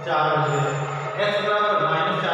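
A man's voice, drawn out and sing-song like chanting, with long held notes.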